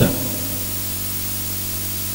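Steady hiss with a low electrical hum underneath, the background noise of the microphone and sound system.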